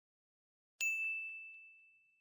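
A single high bell-like ding struck about a second in, its one clear tone ringing on and fading away over about a second and a half, with a couple of faint ticks just after the strike.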